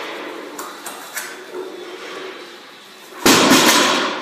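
A heavily loaded barbell, about 785 pounds of plates, dropped from lockout onto wooden blocks: a loud crash and rattle of plates and bar about three seconds in, after a few seconds of lighter noise and clicks.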